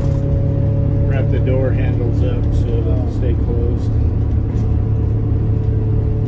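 MCI MC5B coach's diesel engine running at a steady cruise, a continuous low drone with road noise, heard from inside the cab. Indistinct voices sound over it during the first half.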